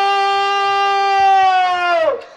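A man's voice holding one long, high wailing note through a microphone, the pitch sagging as the note ends.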